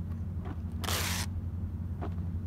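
Masking tape being pulled off its roll: one short ripping sound about a second in, over a steady low hum.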